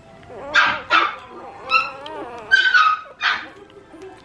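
A dog barking and yelping, about five loud, sharp calls spread over the few seconds, some of them high-pitched.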